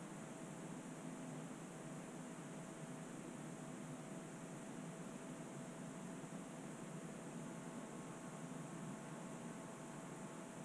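Quiet, steady hiss of room tone with a faint steady hum. The fine clay work makes no distinct sound.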